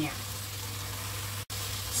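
Soybean sprouts, red paprika and celery sizzling as they stir-fry in hot oil in a non-stick wok, over a steady low hum. The sound drops out for an instant about one and a half seconds in.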